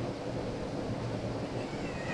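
Steady room noise of a large hall with no speech, a low even hiss and hum.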